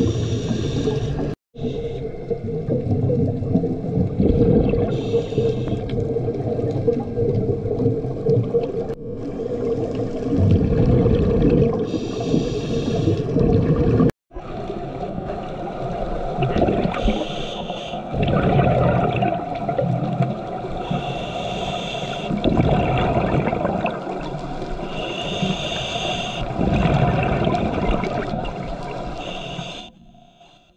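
Scuba diver breathing through a regulator underwater: a hiss on each inhalation every four to five seconds, with gurgling, rumbling exhaled bubbles in between.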